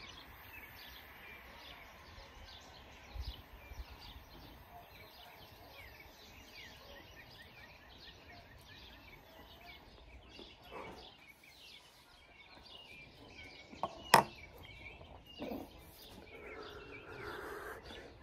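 Quiet outdoor background with small birds chirping on and off, a few soft clicks, one sharp click about fourteen seconds in, and a soft breathy exhale near the end.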